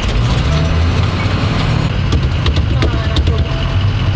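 Short school bus engine running as the bus is driven, heard from inside the cab with a steady low drone.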